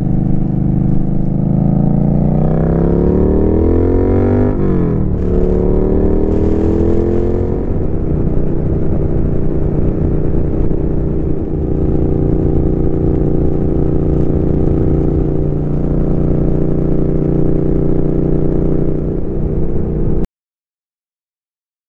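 2017 Triumph Street Twin's 900 cc parallel-twin engine, through a Termignoni two-into-one full exhaust, accelerating onto the highway. It rises in pitch, drops at an upshift about four and a half seconds in, and rises again. From about eight seconds in it holds a steady cruise.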